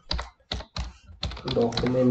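Typing on a computer keyboard: a quick run of separate keystrokes spelling out a word.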